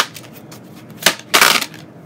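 A deck of tarot cards being handled and shuffled in the hands, heard as two short rustling bursts about a second in.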